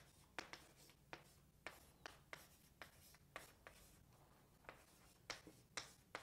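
Faint handwriting: short, irregular taps and scratches of a pen on a writing surface, roughly two strokes a second.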